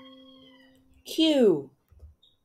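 A single chime note rings out and fades away. About a second in, a voice says the letter "Q" with a falling pitch.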